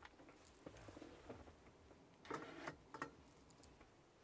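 Near silence with faint handling sounds: soft rustles and light knocks as a foil-lined aluminium Omnia stovetop-oven pan is picked up and moved.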